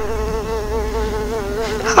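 An insect's buzz, a mosquito's whine: one steady high hum that wavers slightly in pitch, laid in as a sound effect.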